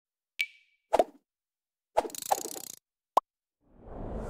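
Logo-animation sound effects: a string of short, separate pops and plops, the first with a brief ringing ping. A longer rattling burst comes about two seconds in, and a whoosh starts to swell near the end.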